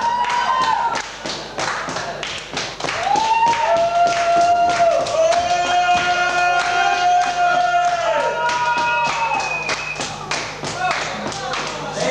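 Live band music: a steady tapping beat, about four to five taps a second, under long held notes that slide up at the start and fall away at the end.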